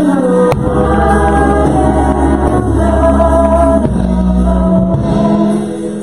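Gospel worship song sung by a small praise team of singers on microphones, holding long notes over a steady low accompaniment. A sharp click comes about half a second in.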